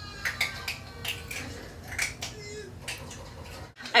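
Faint hand-handling noises: a scattered series of light clicks and taps, like small cosmetic containers being picked up and set down, cutting off sharply just before the end.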